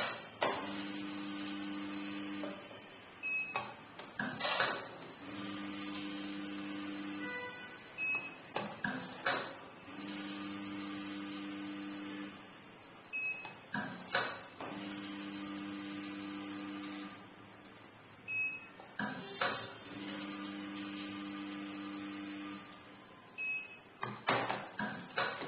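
Automatic tea weighing and filling machine cycling about every five seconds. Its feeder hums steadily for about two seconds as tea is fed onto the scale, a short high beep follows, then the weighed dose drops through the chute into a plastic tub with a brief rattle of clicks.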